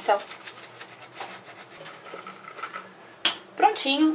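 Soft, repeated scratchy scrubbing of a makeup brush's lathered bristles against a ridged silicone brush-cleaning glove, followed by a single sharp click a little past three seconds in.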